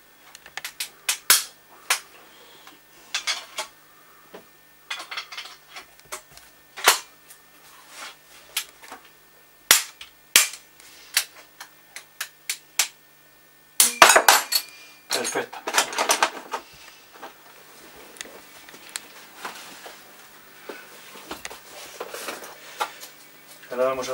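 Sharp metallic clicks and snaps, irregularly spaced, from a shotgun's action and mechanism being worked by hand. A dense run of clicks comes a little past the middle.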